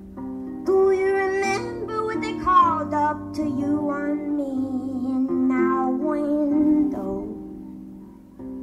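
Solo harp plucked in flowing patterns, with a woman's singing voice gliding over it; the sound thins out towards the end.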